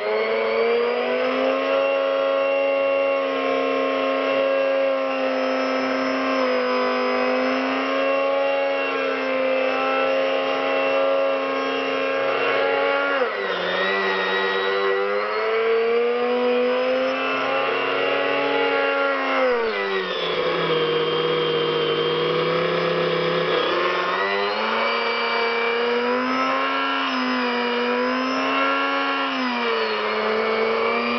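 Small electric grinder running continuously as it grinds coarse sugar into powdered sugar, a steady motor whine. Its pitch sags briefly about 13 seconds in and again for several seconds around 20 seconds in, then climbs back.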